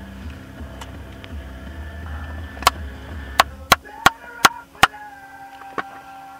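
A run of about seven sharp clicks or taps at uneven intervals through the second half, over a low steady rumble that stops around the middle.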